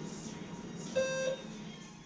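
A single short electronic beep about a second in, lasting about a third of a second, over steady background music: a gym interval timer marking the change of station.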